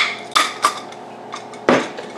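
A large wooden pepper mill grinding peppercorns in a few short twists, heard as brief crunching bursts, the last one the loudest.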